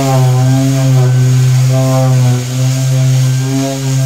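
Electric random orbital sander running against the faired side of a boat's cabin, a loud steady motor hum whose pitch wavers slightly as it is worked over the surface.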